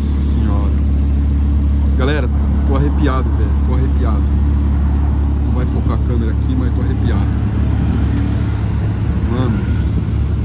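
Audi R8's V10 engine idling steadily with a low, even note, close by.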